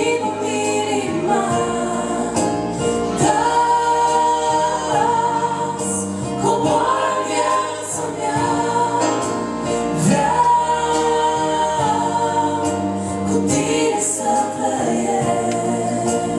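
A woman and a man singing a Christian worship song as a duet, with long held, sliding sung notes over steady electronic keyboard chords.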